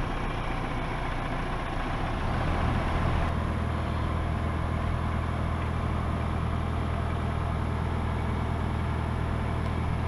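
Crane engine running steadily under load as it hoists a sailboat mast, a low hum that grows stronger about two seconds in and then holds.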